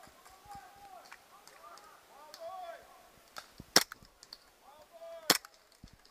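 Two sharp shots from a WE G17 gas blowback airsoft pistol, about a second and a half apart, with faint shouting from distant players in between.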